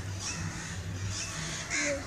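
Crows cawing, about three short calls.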